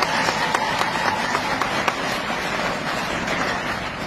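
Audience applauding: a steady, dense patter of hand claps that eases off slightly near the end.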